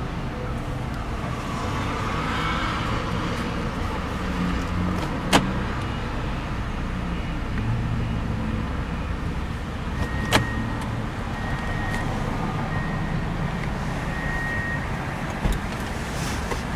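Steady low rumble inside a running 2013 Hyundai Santa Fe's cabin, with a sharp click about five seconds in and another about ten seconds in. After the second click come four short high beeps, about a second and a half apart, while the SUV is in reverse with the rear camera showing.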